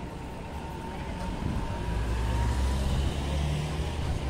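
A road vehicle driving past on a city street: a low engine rumble that swells about halfway through and eases near the end, over steady traffic noise.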